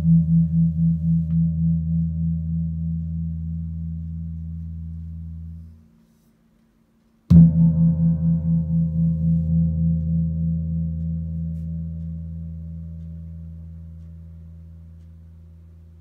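Cast bronze gamelan gong tuned to E, struck twice with a padded mallet: a deep ringing tone with a pulsing wobble about four times a second. The first ring is cut off suddenly about six seconds in; the second strike, about seven seconds in, rings on and slowly fades.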